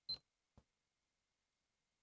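Near silence in a pause between speakers, with a short faint sound right at the start and a tiny click about half a second in.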